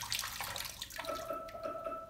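Water pouring out of a glass vase of clay pebbles into a stainless steel sink. About a second in, a Google smart speaker's timer alarm starts, a steady electronic tone.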